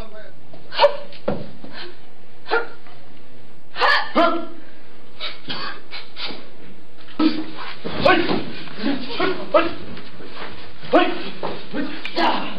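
Short, sharp shouts and hits from martial artists performing kicking and fighting combinations, with spectators' voices. These come as separate outbursts in the first half and grow busier and denser from a little past the middle.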